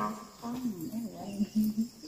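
A low voice talking or humming softly in short, broken phrases between sung verses.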